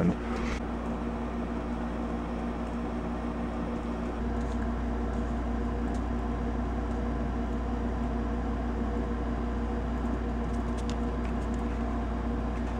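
Steady mechanical room hum with a few faint steady tones and a deep rumble that gets slightly louder about four seconds in; a few faint ticks near the end.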